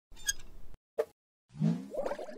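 Animated logo intro sound effects: a short sparkly chime, a single pop about a second in, then a swell of rising tones.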